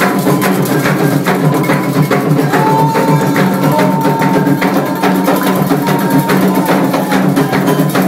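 Candomblé ritual drumming for Ogum: atabaque hand drums beating a fast, steady rhythm together with a struck bell, over voices, with one long high note held from about two and a half seconds in until near the end.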